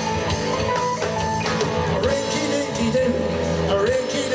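Live rock band playing a passage led by electric guitar, over bass guitar and a drum kit.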